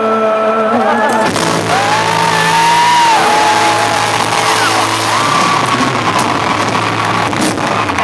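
Live band music played loud through a concert PA: held bass notes and chords that change every few seconds, with crowd voices rising and falling over them.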